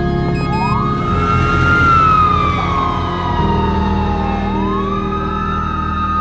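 Ambulance siren wailing: its pitch rises about half a second in, falls slowly, then rises again about two-thirds of the way through. Steady low background music runs underneath.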